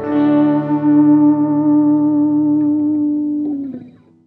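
Guitar with chorus, flanger and reverb effects striking the tune's final chord, which rings for about three and a half seconds. The chord dips slightly in pitch and fades out near the end.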